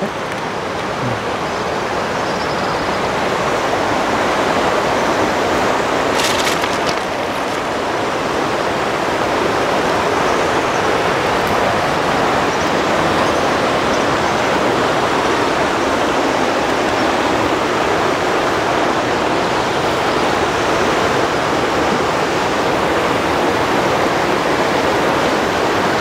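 Shallow, rocky river rushing steadily over rapids: a constant, even wash of moving water.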